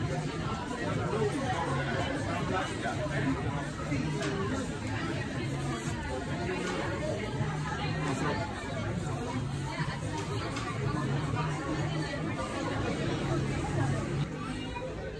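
Background music playing under the indistinct chatter of several people talking at once.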